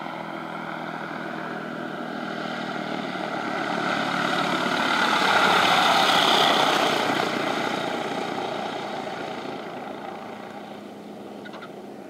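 Engine and propeller of an Evolution Trikes Revo weight-shift trike flying past low, swelling to its loudest about six seconds in as it passes close, then fading away.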